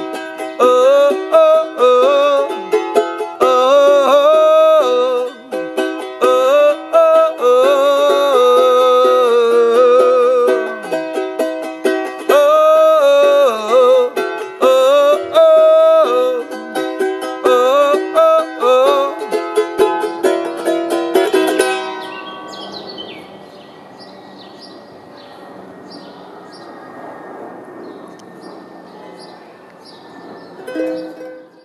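Charango strummed briskly, with a wavering melody line over the strumming, through the song's closing section. The music stops about 22 seconds in, leaving only a faint background hiss.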